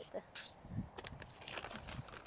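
A plastic bag of Biotone plant food rustling sharply as it is picked up, followed by faint scuffs and scrapes of hands working soil.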